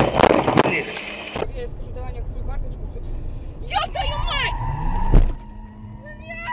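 Car collision heard from inside the car on a dashcam: the engine runs under voices, then comes one loud crash impact about five seconds in.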